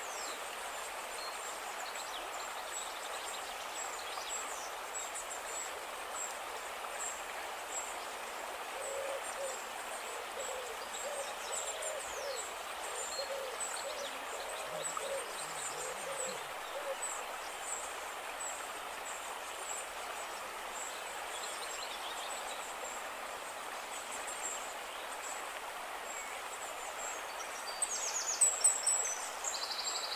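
Forest stream ambience: a steady wash of flowing water under a high, thin insect drone. A bird gives a run of low, repeated hooting calls through the middle. Near the end comes a burst of louder splashing as hands work in the shallow water.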